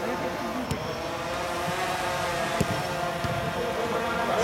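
A football kicked twice on artificial turf during play, sharp thuds about a second in and again past halfway, over a steady background hum and faint players' voices.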